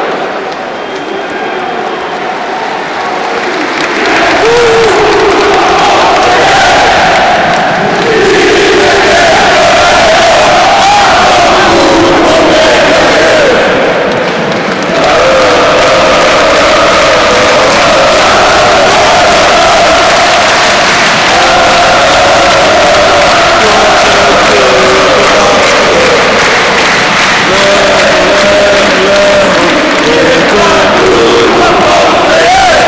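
Stadium crowd of football supporters chanting and singing together, loud. It starts softer and swells about four seconds in, with a brief dip around fourteen seconds.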